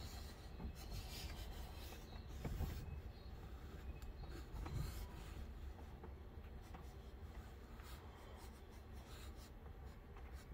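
Pencil lead scratching and rubbing on the paper of an activity book as a child traces a maze, faint and uneven, with a couple of soft low bumps.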